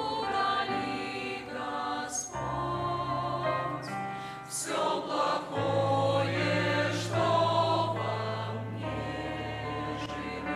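Mixed church choir singing a Christian hymn over an accompaniment of long held bass notes, which move to a new note about every three seconds.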